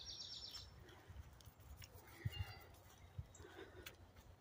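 Faint wild birdsong: a quick high trill at the start and a brief fainter call a little past halfway. Under it are light clicks and a low rumble from walking the trail with the phone in hand.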